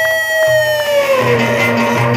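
Egyptian Sufi inshad band music. A single long lead note slides up, holds, and bends down about a second and a half in, over a steady pulsing bass beat.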